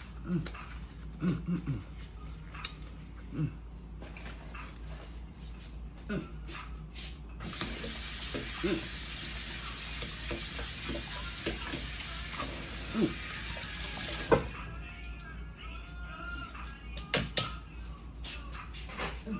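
Kitchen sink tap running for about seven seconds, switched on and then shut off abruptly, with scattered light knocks and clicks before and after.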